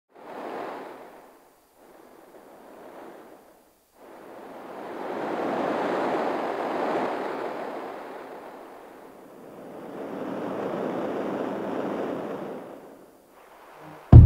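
A rushing noise with no tone in it, swelling and fading four times: two short swells in the first few seconds, then two long ones of about four to five seconds each.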